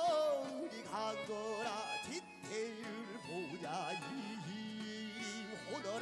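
Live fusion gugak music from a band backing a pansori performance: a bending, heavily ornamented melody line over sustained accompaniment.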